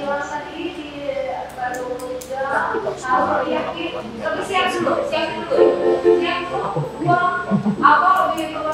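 Small choir of young singers singing in rehearsal, accompanied by an electronic keyboard.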